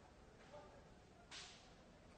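Near silence: faint room tone, with one short faint hiss about one and a half seconds in.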